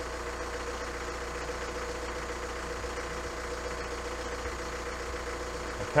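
Diesel car engine idling steadily.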